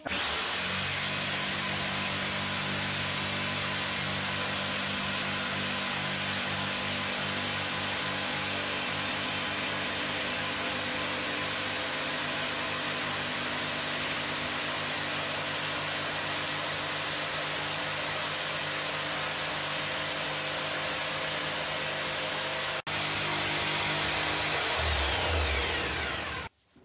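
Corded power saw running steadily as it cuts through an OSB board to size. Near the end the sound breaks off suddenly and resumes slightly louder.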